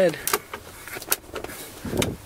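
Plastic heater and ventilation control levers on a Citroën DS21 dashboard being slid by hand, giving a few sharp clicks about a second apart and a duller knock near the end.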